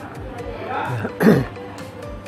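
A man briefly clears his throat just past the middle, over steady background music.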